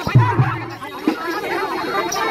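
Many people talking and calling out at once over Chhattisgarhi Raut Nacha folk music, with a sharp click right at the start.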